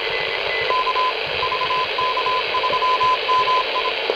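Homebrew phasing direct-conversion shortwave receiver's audio output: steady band-noise hiss, with a Morse code (CW) signal heard as a tone of about 1 kHz keyed on and off in dots and dashes, starting just under a second in.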